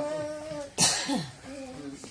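A man speaking, broken about a second in by one sharp cough.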